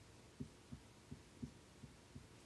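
Near silence with a faint series of soft, low knocks, about five in two seconds, from a marker writing on a whiteboard.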